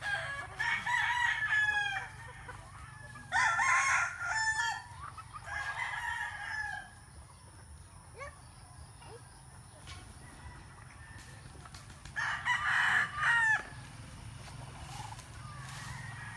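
Young gamefowl stags crowing: three crows in quick succession over the first seven seconds, then a pause and a fourth crow about twelve seconds in.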